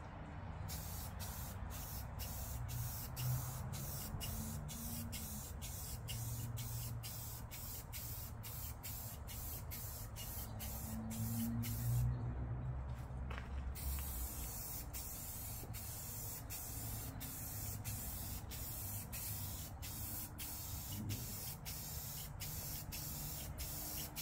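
Aerosol spray-paint can hissing in long, steady passes as a thin first coat of paint goes onto a mower hood, breaking off briefly about halfway through.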